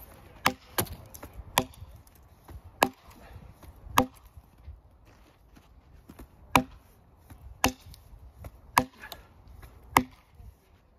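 Axe chopping into a log lying on the ground, bucking it through: about eight sharp blows at an uneven pace, with a pause of two to three seconds midway.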